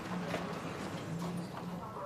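Faint footsteps crossing a room floor over quiet room tone.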